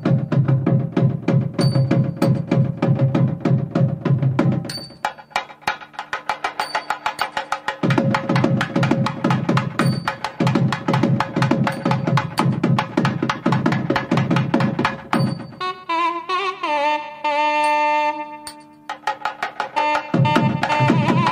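Thavil drumming in a fast, dense run of strokes over a steady drone note, thinning out for a few seconds about five seconds in and then resuming at full weight. Near the end the nadaswaram comes in with a sliding melodic line in raga Hamsadhwani.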